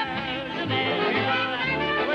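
Big-band swing music with brass, under a voice singing a melody with a wide vibrato.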